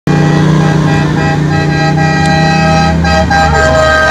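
A loud, sustained horn sounding several steady pitched tones that shift note a few times, over the low running of the approaching vehicles' engines.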